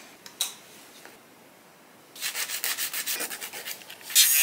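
A hand nail file rubbed back and forth across fingernails in quick, even strokes, about seven a second, starting about halfway in.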